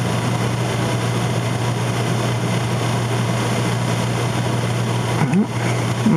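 Steady background hum with an even hiss, like a running fan or air conditioner, with no distinct events on top.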